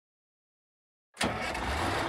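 Truck engine sound effect cutting in suddenly about a second in, then idling steadily with a low rumble.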